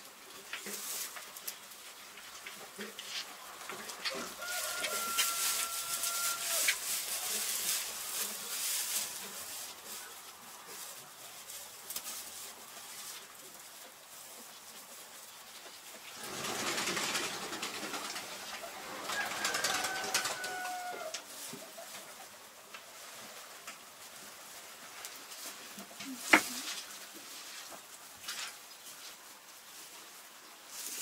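Sheep rustling and tugging at the hay bedding as they feed, in two stretches, each with a long, level high-pitched animal call over it. One sharp click near the end.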